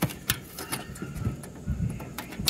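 A few light clicks as a fingertip works a small switch on an old circuit board, over a low rumble.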